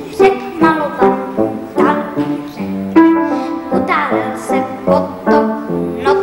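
Music: a young boy singing a lively tune with instrumental accompaniment, new notes starting in quick, separate strokes about two to three times a second.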